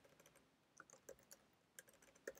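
Faint computer keyboard typing: scattered single keystrokes at an irregular pace.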